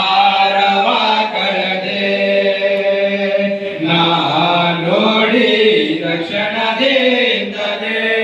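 A small group of young men singing a Kannada Christian devotional song together into a microphone, in long held notes that slide between pitches.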